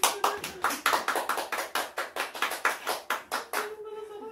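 Hands clapping in a quick, even rhythm of about five claps a second, stopping shortly before the end.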